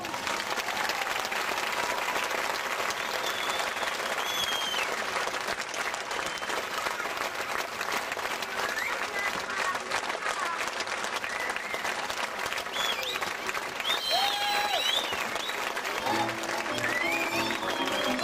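Audience applauding steadily after a folk dance ends, with a few high calls rising and falling above the clapping. The folk band strikes up again about two seconds before the end.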